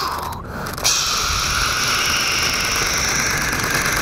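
Jet noise: a steady hissing whine that starts abruptly about a second in and holds level.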